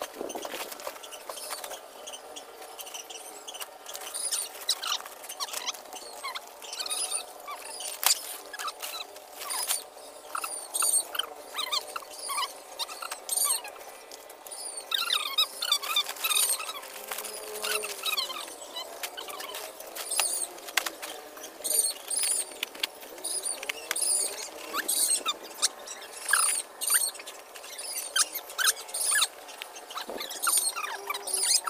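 Dry sticks and palm-frond stems crackling and snapping, with woven plastic sacks rustling, as the sticks are stuffed into the sacks; a busy, irregular run of clicks and crackles.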